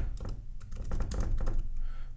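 Typing on a computer keyboard: a quick, irregular run of keystrokes, several a second.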